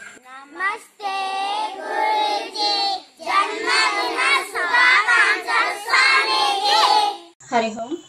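A group of young children's voices chanting together in unison, a greeting said in chorus. It comes as a short phrase, a brief pause, then a longer phrase, stopping about seven seconds in.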